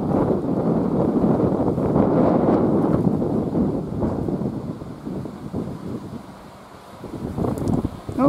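Wind buffeting the microphone, a loud irregular rumble that eases off after about five seconds.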